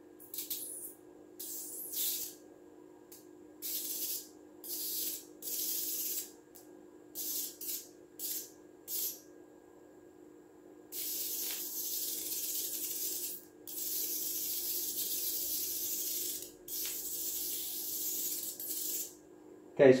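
Sparks from a low-power Tesla coil's tin-can top jumping to a grounded screwdriver, hissing. There is a string of short hisses through the first nine seconds, then three longer, even hisses of two to three seconds each. A faint steady hum runs underneath.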